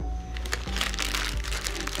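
Clear plastic parts bag crinkling as a hand handles the bagged plastic model-kit sprues, a dense run of crackles starting about half a second in. Steady background music plays underneath.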